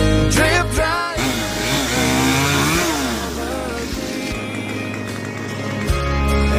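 A chainsaw engine revving up and down a few times, mixed in with a country song that keeps playing underneath.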